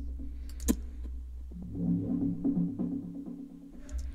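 Electronic dance-music playback from a track in progress, thinned to a steady low bass tone with a single click under a second in. From about a second and a half in, a low synth phrase pulses in a repeating pattern and fades near the end.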